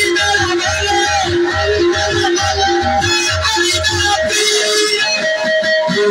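Live instrumental music played loud: a plucked string instrument runs a quick, repeating melody over a steady low beat, and the beat drops out about four seconds in.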